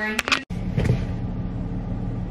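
Steady low rumble of a running car heard from inside the cabin. It starts abruptly about half a second in, after a brief voice-like sound and a few clicks are cut off.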